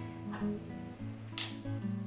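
Background acoustic guitar music playing softly, with one faint click about one and a half seconds in.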